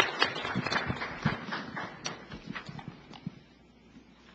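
Audience applauding, the claps thinning out and dying away over the last second or so.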